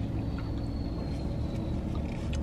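Steady low rumble inside a parked car's cabin, with a faint thin high tone through the middle second.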